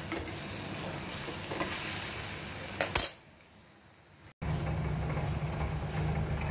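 Arbi (taro) leaf sabzi sizzling as it fries in a steel kadhai, stirred with a steel spoon. About three seconds in, two sharp clinks of metal on metal, then a brief quiet gap before the sizzling resumes with a low steady hum under it.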